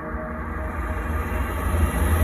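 Live metal band's instrumental build-up: a heavy low rumble of bass and drums with no clear melody, swelling steadily in loudness.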